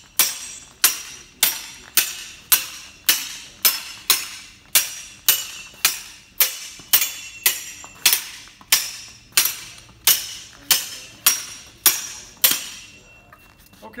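Steel longsword blades clashing in a steady run of cuts and parries, about two blows a second, each blow ringing briefly; some two dozen strikes that stop about a second and a half before the end.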